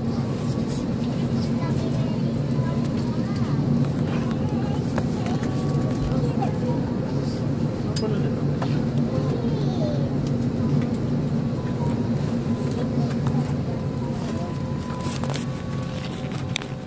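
Steady low hum inside a boarding airliner's cabin, with indistinct chatter from passengers and a few light clicks and knocks.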